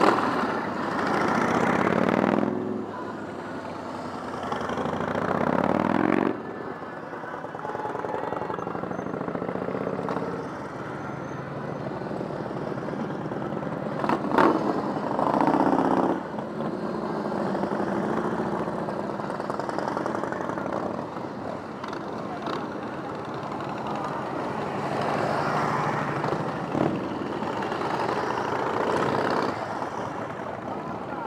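Big cruiser motorcycles passing close by one after another, each engine swelling and rising in pitch as the bike accelerates away from the turn. The loudest passes come at the start, around five seconds in and around fifteen seconds in, with quieter bikes following between them.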